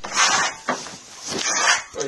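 Steel trowel scraping across wet Venetian plaster on a wall in repeated strokes, about three rasping sweeps in two seconds.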